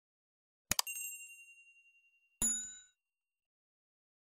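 Animated subscribe-button sound effects: two quick clicks followed by a ringing ding that fades away over about a second and a half, then a short, brighter bell ding from the notification bell.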